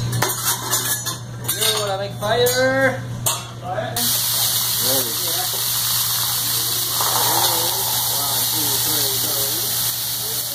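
Metal spatulas clacking and tapping on a teppanyaki griddle, then about four seconds in a loud, steady sizzling hiss starts as food and steam hit the hot steel plate.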